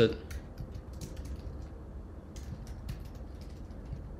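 Typing on a computer keyboard: a run of quick, light keystrokes with a short pause in the middle.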